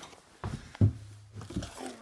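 Objects being moved and knocked about while rummaging on a cluttered wooden workbench: a few scattered knocks and rattles, the two sharpest about half a second and just under a second in.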